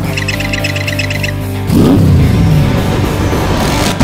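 Cartoon soundtrack music with sound effects: a quick run of high ticks in the first second or so, then, just under halfway through, a louder effect that sweeps down in pitch.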